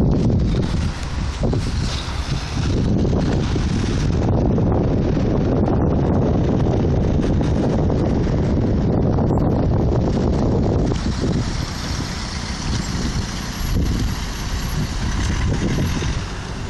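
Wind buffeting a phone's built-in microphone: a loud, rough, low rumble that eases a little about eleven seconds in.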